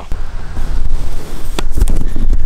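Loud low rumbling and rustling on a handheld camera's microphone, handling and wind noise as the camera is carried up steep rock, with a few sharp knocks about one and a half seconds in.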